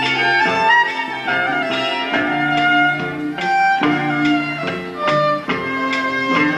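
Fiddle bowing a melody over steadily strummed acoustic guitar in a live country duo's instrumental break, recorded on a camcorder microphone.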